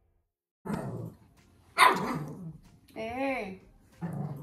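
A dog barks: a short sound about a second in, then a loud bark near two seconds. Near the end comes a wavering, whining cry.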